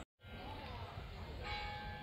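A single bell stroke about one and a half seconds in, its tone ringing on, over a steady low outdoor rumble.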